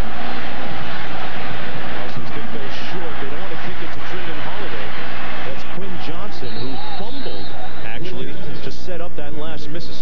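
Large stadium crowd cheering a home-team touchdown: a dense roar full of yelling and shouts, which thins after about six seconds into scattered individual shouts.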